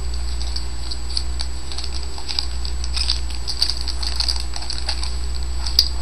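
Stack of 2007 Upper Deck NFL Artifacts football trading cards being flipped through by hand: many light, quick ticks and flicks of card stock over a steady low electrical hum.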